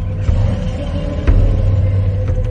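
Cinematic intro sting: a deep bass rumble with heavy booming hits about once a second over a steady droning tone.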